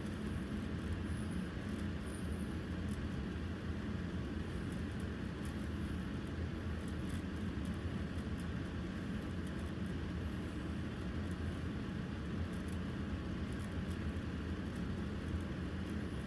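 Steady low hum with an even hiss, like a fan or other appliance running in a small room, with faint rustling of a towel as a wet puppy is rubbed dry.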